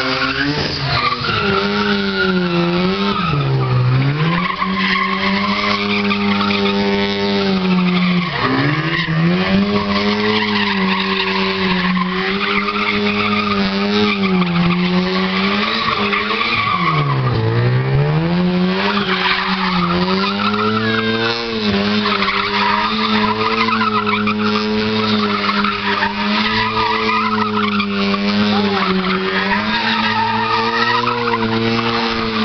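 A car doing a burnout: its engine is held at high, fairly steady revs while the spinning tyres screech on the pad. The revs drop sharply and climb back three times: about four, eight and a half, and seventeen seconds in.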